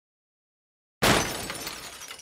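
A sudden crash of breaking glass about a second in, dying away into scattered tinkles of falling shards.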